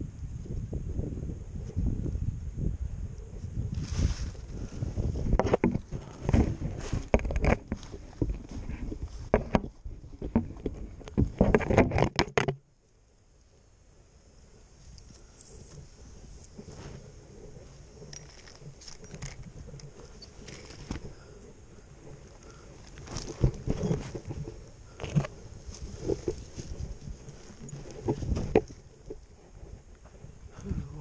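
Close rustling, bumps and low rumble of handling and movement right at a body-worn camera's microphone, busy with sharp knocks for about the first twelve seconds. It then drops suddenly to fainter rustles and a few louder bumps near the end.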